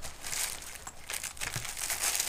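Crinkling and rustling of a plastic bag as a wrapped item is pulled out of a zipped mesh pocket in a hard-shell carrying case: a stream of small irregular crackles.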